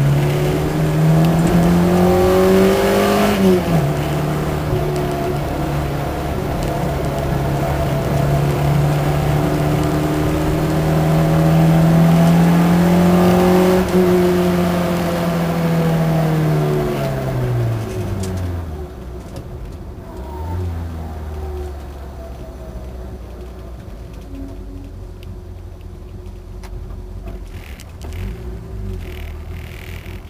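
Car engine heard from inside the cabin under hard acceleration: the revs climb, drop sharply at a gear change about three and a half seconds in, then climb and hold through a long pull. After about fourteen seconds the revs fall away as the car slows, and from about eighteen seconds the engine runs quietly at low revs as the car rolls along.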